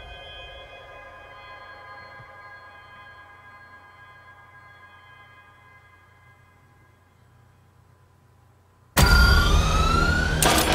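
Film trailer soundtrack: a held, ringing chord of steady tones fades slowly for about nine seconds. Near the end a sudden loud burst of sound effects cuts in, with rising whines over a dense mechanical clatter.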